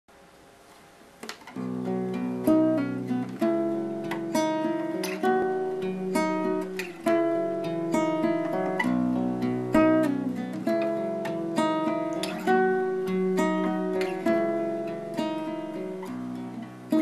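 Solo nylon-string classical guitar in an open major tuning, playing plucked chords and melody notes that ring on. It comes in about a second and a half in, after a brief quiet start.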